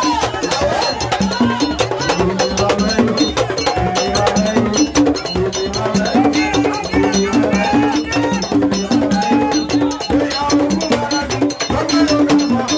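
Haitian vodou roots music: fast percussion with clicking, bell-like strokes, under several voices singing a melody together.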